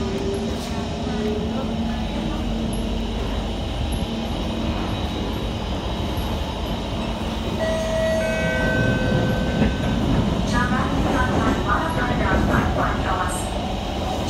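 Kawasaki Heavy Industries C151 metro train running, heard from inside the carriage: a steady rumble of wheels and running gear. Brief whining notes come in near the start and again about eight seconds in. Voices are heard over it in the last few seconds.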